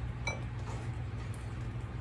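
A single faint clink against a ceramic bowl about a quarter second in, with a brief ring, over a low steady hum.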